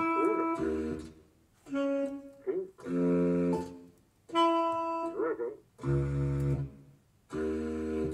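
MIDI-file playback of an algorithmically generated piece for baritone saxophone and computer, sounded by a software synthesizer. About eight separate sustained notes, each roughly half a second long, with short gaps between them, some low and some high, at a very slow tempo.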